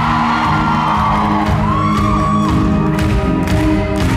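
Live acoustic and electric guitars playing an instrumental passage of a pop-rock song in a concert hall, with a voice whooping from the audience partway through.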